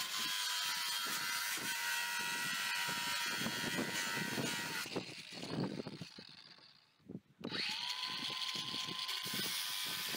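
Cordless DeWalt angle grinder with a thin cutting disc slicing into a shipping container's corrugated steel roof: a steady high motor whine with a hiss of metal cutting. About five seconds in it is switched off and winds down. A little after seven seconds it is started again, its whine rising back up, and it goes on cutting.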